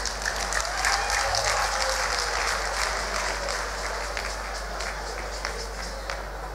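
A congregation applauding, a dense crackle of many hands clapping that swells about a second in and eases off toward the end.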